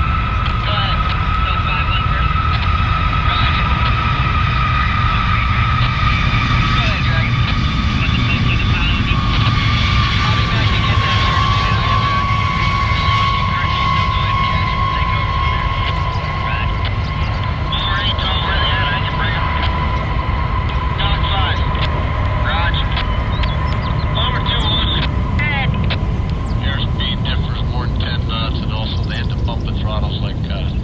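Jet aircraft engines running, with a steady low rumble and a high whine that slowly falls in pitch over the first half. In the second half, short chirping and clicking sounds come over the engine noise.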